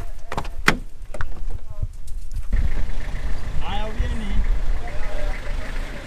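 A few sharp knocks and clicks from the minibus, then from about two and a half seconds in the minibus engine running with a steady low rumble, with voices in the background.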